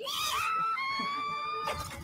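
An anime character's drawn-out scream of "Nooooo!" in the trailer's dubbed voice track. It rises at first, is then held for about a second and a half, and breaks off near the end.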